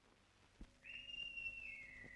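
A faint, high, whistle-like note, held and then dropping slightly in pitch about two-thirds of the way through, over a faint low hum. A soft thump comes just before the note begins.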